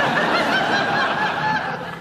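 Live theatre audience laughing together, a long burst of many voices that fades away near the end.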